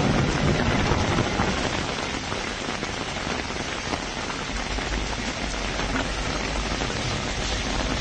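Steady heavy rain falling on a street covered in hailstones during a thunderstorm, with a low rumble underneath from about five seconds in.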